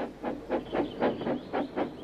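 Steam locomotive chuffing at a steady beat of about four puffs a second as it runs in towards a station.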